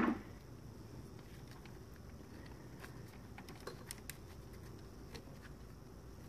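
Faint scattered clicks and rustling of hands working a wiring harness, pulling wires through a foil-wrapped split loom.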